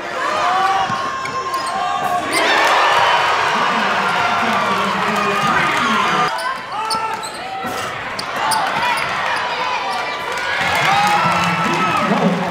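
Basketball game sounds in a gym: a ball bouncing on the hardwood floor, short squeaks of sneakers, and crowd voices, which swell from about two to six seconds in.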